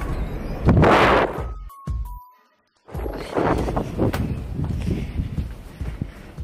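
Strong wind buffeting a phone microphone, with a loud rushing gust about a second in. The sound drops out completely for about half a second near the middle.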